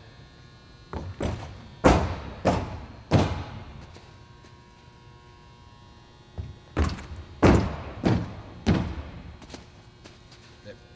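Foot strikes of an athlete doing alternate-leg bounds on a runway, a rhythmic run of about five heavy thuds roughly 0.6 seconds apart. After a pause of about three seconds, a second run of about five thuds follows.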